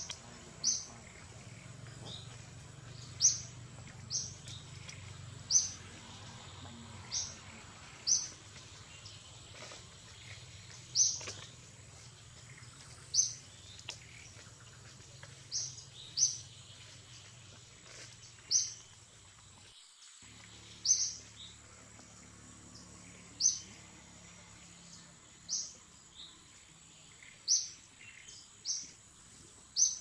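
A bird calling: short, sharp high-pitched chirps repeated every one to two seconds, over faint steady background noise.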